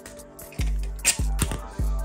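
Background music with a beat: deep bass notes land a little over half a second apart. A few light clicks sound over it.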